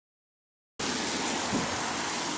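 Silence for the first moment, then about three-quarters of a second in a steady hiss of street traffic on a wet road begins.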